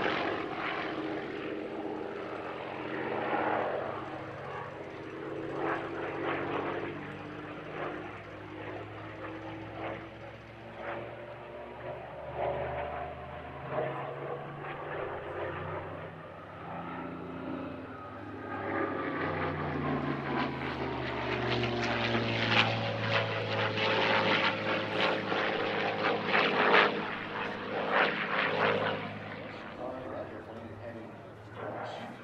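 Propeller-driven WWII fighter's V-12 piston engine running through aerobatic manoeuvres overhead. Its pitch slides up and down, and it grows louder in the second half.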